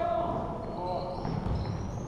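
Basketball bouncing on a gym floor, with players and spectators calling out across the court.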